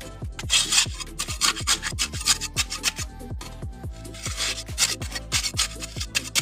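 A steel trowel scraping and packing wet concrete mix into a block mould, with a rasping scrape about half a second in and again after about four seconds, over background music with a steady kick-drum beat.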